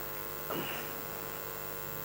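Steady electrical mains hum. A brief faint sound comes about half a second in.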